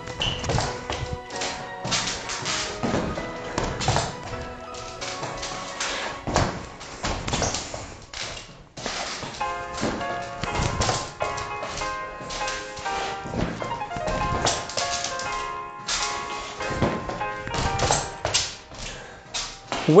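Background music with a steady beat, over repeated taps and thuds of badminton shoes landing on a wooden floor during split steps, hops and lunges.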